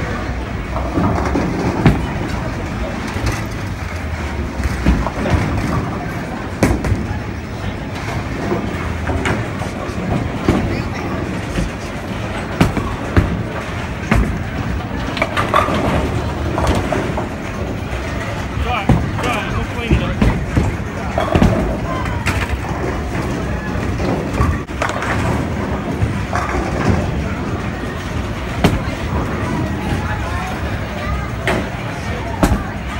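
Bowling alley din: balls rolling down the lanes in a steady low rumble, pins and balls clattering in many short sharp crashes, with voices in the background.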